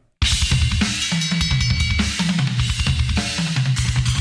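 Heavy metal song cutting in abruptly: a Tama drum kit played with rapid double bass drum, snare and cymbals, including a ringing bell, over the band's low, chugging riff.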